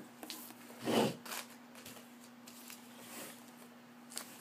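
Faint rustling and light clicks of trading cards and plastic card sleeves being handled while searching through them, with one louder rustle about a second in.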